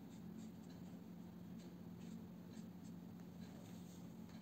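Faint, short scratchy strokes of a watercolour brush on paper, over a steady low hum.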